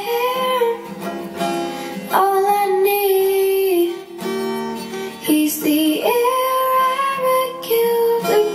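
A girl singing a slow song in long held notes while strumming an acoustic guitar.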